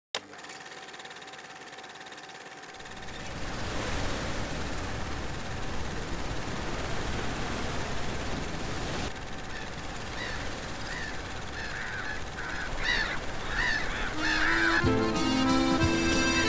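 Steady rush of surf with gulls calling repeatedly over it. Accordion music comes in about a second before the end.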